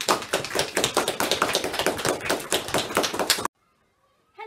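Applause: several people clapping, dense and quick, that stops abruptly about three and a half seconds in.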